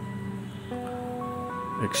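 Background music: soft held notes that move to new pitches a few times, with no beat. A man's voice starts just before the end.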